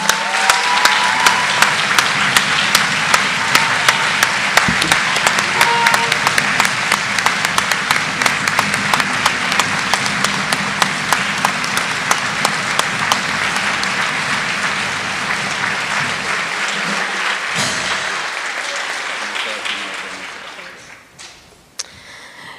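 Audience applauding: a dense, steady wash of many hands clapping that dies away near the end.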